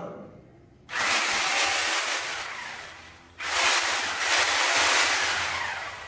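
A handheld corded power tool run twice. Each run is a loud rushing noise about two seconds long that starts suddenly and dies away.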